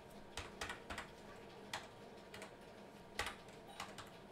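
A handful of faint, scattered computer keyboard keystrokes, about six taps at uneven intervals, as text is edited in a document.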